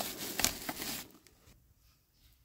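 Bubble wrap rustling and crinkling as it is handled, with a few sharp crackles, dying away about a second in.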